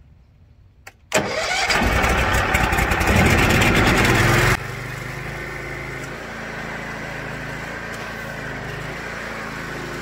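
The 18 hp Briggs & Stratton Vanguard V-twin engine of a trailer-mounted pressure washer starting from cold on choke: it catches about a second in and runs loud and rising for a few seconds. It then drops suddenly to a quieter, steady run.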